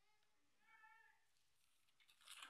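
Near silence: room tone, with a faint, brief high-pitched call about half a second in.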